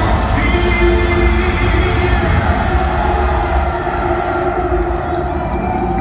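Music for a live stage show played through a theatre's sound system: long held notes over a deep low rumble, easing slightly in loudness after the midpoint.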